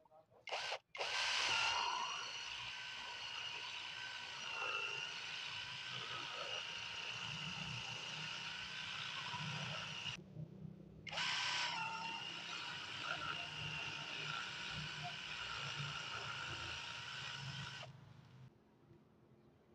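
Cordless impact driver spinning a titanium-coated step drill bit, boring out the holes of a plastic connector housing. The motor whine spins up after a short blip, runs steadily, stops briefly about ten seconds in, then spins up again and runs until just before the end.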